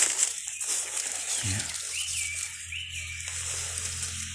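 A bird gives two short whistled notes about half a second apart, each rising and then falling, over a steady high hiss of forest background.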